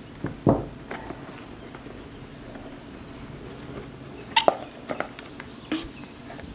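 A cardboard collector box being handled and opened by hand: a soft thump about half a second in, then a few short sharp clicks and knocks near the end as the box is worked open.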